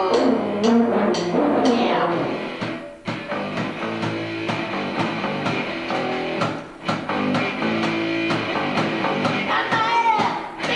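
Live punk rock band playing: electric guitars, bass and drum kit keeping a steady beat, with a falling glide in pitch right at the start and two brief drops in the sound partway through.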